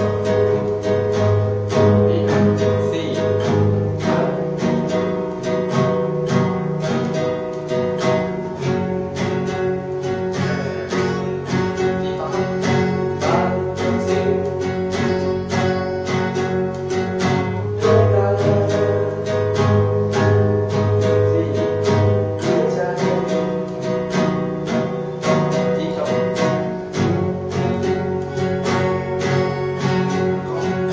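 Solo acoustic guitar played fingerstyle, a continuous stream of plucked notes and chords in an instrumental arrangement of a song.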